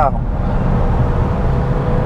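Interior sound of a Fiat Stilo Abarth at a steady pace: the 2.4-litre five-cylinder Fivetech engine holding an even note with a steady hum, under a low rumble of road and tyre noise heard through the cabin.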